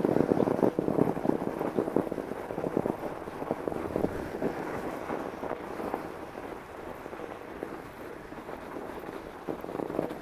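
2021 Northrock XC00 fat bike's wide tyres crunching over packed snow on lake ice, a dense run of small irregular crackles that grows fainter in the second half.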